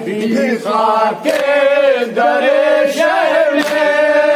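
Men's voices chanting a Shia noha (mourning chant) together, holding long drawn-out notes. The chanting is broken by a few sharp slaps of hands on chests (matam).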